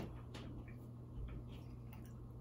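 Quiet room with a steady low hum and a few faint, short clicks scattered through it.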